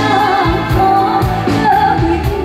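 Woman singing a pop ballad live with a backing band, her held notes wavering with vibrato over a steady drum beat.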